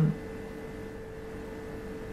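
A brief "mm" from a woman at the very start, then a steady background hum with one constant held tone and no other events.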